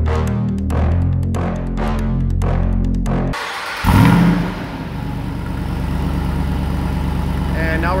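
Electronic background music with a steady beat for about three seconds. Then the Jeep Wrangler Rubicon 392's 6.4-litre HEMI V8 starts with a brief loud flare of revs and settles into a steady, deep idle through its exhaust.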